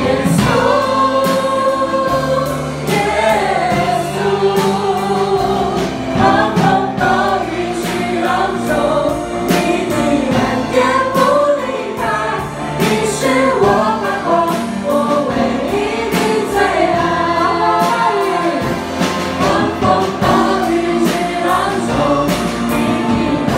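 A church worship team singing a Mandarin praise song together, with live band accompaniment and a steady drum beat.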